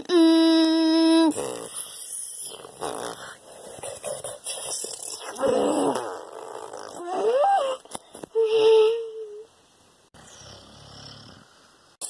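A person's voice making monster sounds for toy figures: a long held screech first, then rough growls, a rising cry about seven seconds in and a shorter held cry near nine seconds.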